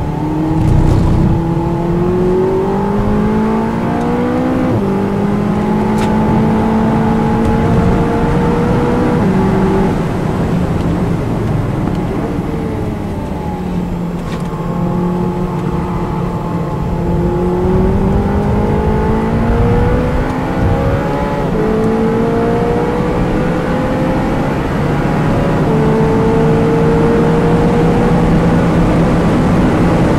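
SEAT León Cupra 280's turbocharged 2.0-litre four-cylinder engine, heard from inside the cabin on a fast track lap. The revs climb through the gears and drop at each upshift, fall away as the car slows in the middle, then climb again.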